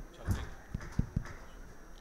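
A microphone being handled and tapped, heard through the sound system: four short, dull knocks in quick succession.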